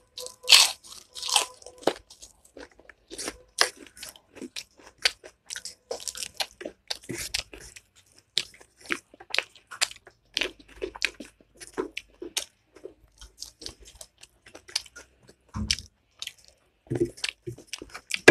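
A person chewing and crunching food close to the microphone: many short, sharp crunches and wet mouth clicks, irregular throughout.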